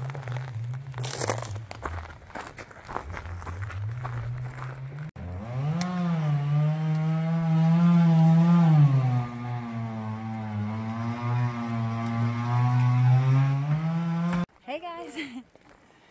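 Two-stroke chainsaw running at high revs while cutting through a log. Its pitch climbs and holds, drops under load about nine seconds in, rises again, and cuts off suddenly near the end.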